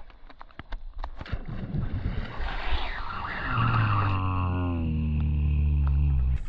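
Surface splashes of a peacock bass swirling at a lure, with a few sharp clicks early on and a splashy burst a little before the middle. A low steady drone comes in over the second half and is the loudest sound.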